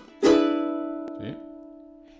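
A ukulele strums a single E chord about a quarter second in and lets it ring out, fading slowly: the chord on the fifth that ends the 12-bar blues in A. There is a light click about a second in.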